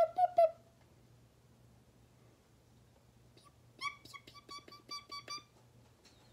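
Budgerigar peeping: a few short chirps at the start, a pause, then a quicker run of about ten short chirps near the end.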